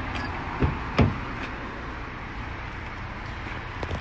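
Car door being opened by its handle: two short clicks from the latch about half a second apart, the second louder, over steady outdoor background noise.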